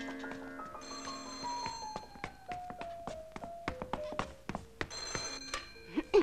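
A telephone bell rings twice, short rings about four seconds apart, before it is answered. Under it a slow descending run of single musical notes steps down in pitch, with scattered sharp clicks and knocks.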